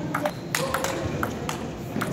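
Table tennis ball being struck back and forth by rubber-faced paddles and bouncing on the table during a rally: a quick run of sharp clicks.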